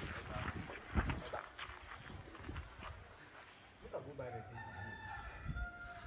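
A rooster crowing once, one long call that starts about four seconds in and is still going at the end. Before it, a single sharp knock about a second in.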